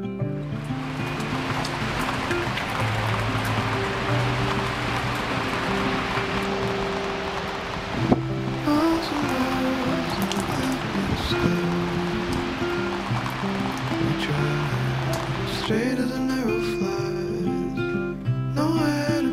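Steady rain falling onto concrete, a hiss of many drops, heard under background acoustic guitar music. The rain fades in at the start, breaks off briefly midway and stops a few seconds before the end, leaving the guitar alone.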